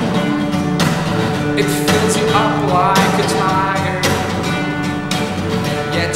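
Acoustic guitar strummed in steady chords while a man sings a held, wordless-sounding vocal line over it.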